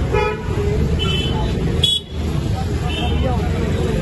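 Busy street sound: a steady din of traffic and crowd voices, cut through by several short vehicle horn toots, the first and longest right at the start.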